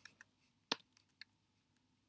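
Four sparse keystrokes on a computer keyboard, single short clicks at uneven spacing, the loudest a little under a second in.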